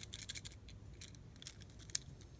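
Faint, light clicks and ticks as a die-cast Hot Wheels Chevelle loaded with BBs is picked up off a plastic track and turned in the hand, with a quick cluster at the start and a few single ticks after.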